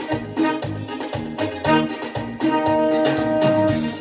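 Yamaha PSR-S770-series arranger keyboard played live: an easy-going melody of held, organ- and electric-piano-like notes over a moving bass line and a steady beat.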